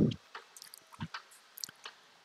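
A pause in a voice-over: after the last word trails off, a few faint, short mouth clicks and lip noises are heard close to the microphone.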